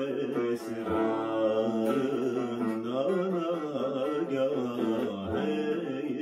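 A man sings long held, ornamented notes in a classical Turkish song in makam Acem, accompanied by a Turkish tanbur.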